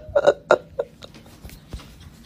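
Domestic cat giving three short, clipped calls about a third of a second apart in the first second, then falling quiet.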